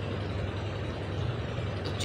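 Steady low mechanical hum with an even background hiss, like a motor or engine running without change.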